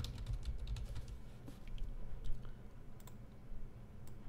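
Computer keyboard typing: a few scattered, faint keystrokes as a short phrase is typed.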